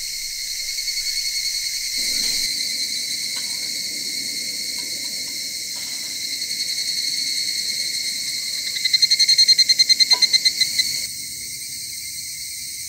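Evening insect chorus: a steady high-pitched trilling throughout. About nine seconds in, a higurashi (evening cicada) breaks in louder with a fast pulsing call, about eight pulses a second, for under two seconds.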